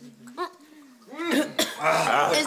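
People coughing and letting out short gasping vocal sounds after knocking back shots of liquor. These start faintly and grow louder a little past halfway.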